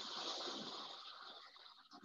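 A wave of real water washing into an artificial sea-cave exhibit, a rushing wash that starts suddenly and dies away over about a second and a half.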